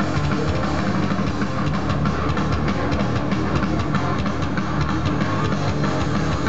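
Live heavy metal played loud: a distorted electric guitar riffing without a break over fast, steady drum hits.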